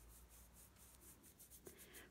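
Near silence, with faint rubbing of a paintbrush stroking paint onto a vinyl doll head.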